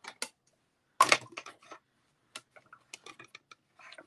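Clear plastic cutting plates of a hand-cranked die-cutting machine being handled and set in place over a die: a sharp clack about a second in, then a run of light clicks and taps.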